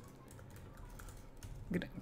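Faint typing on a computer keyboard: a scatter of soft, irregular key clicks as a search is typed in.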